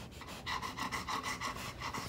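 Dog panting rapidly, about six or seven quick breaths a second.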